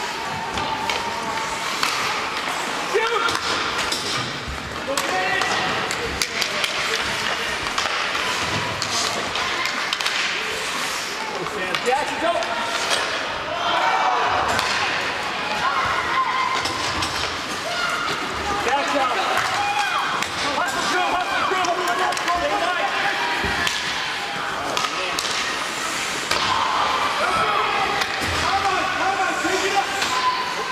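Youth ice hockey game: spectators' voices shouting and calling throughout, with repeated sharp clacks and thumps of sticks, puck and boards.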